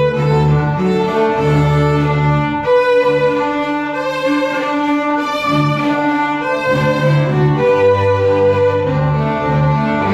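Small string ensemble of violins and a double bass playing a piece together: long bowed notes in several parts over a moving bass line, with no breaks.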